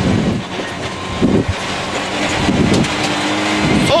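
Citroen C2 rally car's engine running hard under load, heard inside the cabin, its revs rising and falling, over steady tyre and road noise from a loose dirt road.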